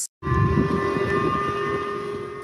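Warning sirens sounding a missile alert in Japan: several steady, unwavering tones that start suddenly about a quarter second in, over a low rumble.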